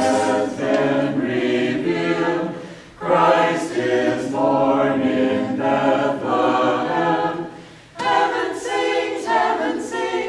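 Mixed choir of men and women singing a Christmas carol a cappella, in phrases with short breaks about three and eight seconds in.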